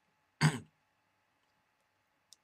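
A man briefly clears his throat once, about half a second in.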